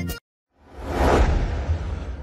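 A short burst of music cuts off abruptly, and after a brief gap a swelling whoosh with a deep low rumble rises about half a second in, peaks soon after and slowly fades: a TV news station-ident transition sound effect.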